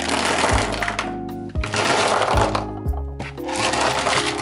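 Plastic highlighters and fineliner pens clattering and rattling against each other and a plastic case as they are tipped out onto a desk in several pours. Background music runs underneath.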